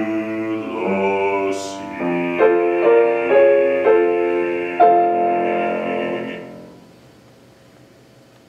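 A male classical singer holds a long final note over piano accompaniment, the piano striking a series of chords about two to five seconds in. Voice and piano die away together about six and a half seconds in.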